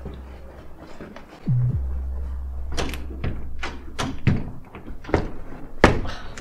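A string of dull, irregular knocks and thuds, about nine in three seconds, the loudest near the end, over a steady low hum that breaks off briefly about one and a half seconds in.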